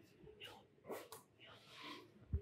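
Near silence: courtroom room tone with a few faint, brief, indistinct sounds.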